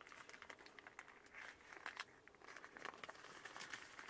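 Faint crinkling and rustling of baking paper as a sheet of pizza dough is lifted and rolled up by hand, with many small scattered crackles.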